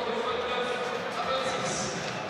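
Stadium crowd noise: a steady din of many voices with a faint held note running through it.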